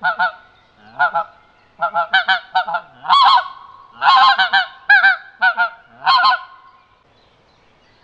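Pinkfoot Hammer plastic pink-footed goose call, sounded by coughing into it with cupped hands: a run of short goose honks and yelps of varying pitch, some single and some in quick clusters, for about six and a half seconds before it stops.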